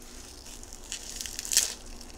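Biting into a hot dog wrapped in a crisp sheet of nori seaweed, close to the microphone: soft crackling as the teeth close, then one sharp crunch as the seaweed tears, about one and a half seconds in.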